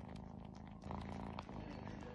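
Kitten purring steadily, a low rumble that swells and eases with its breathing.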